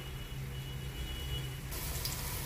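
Steady low hum with a faint thin high tone from an electric cooktop heating oil in a steel pot. Near the end a hiss sets in as minced garlic begins to sizzle in the hot oil.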